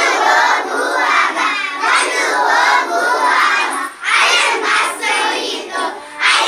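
A group of young children singing a Kannada action song loudly together in short phrases, with a brief break about four seconds in.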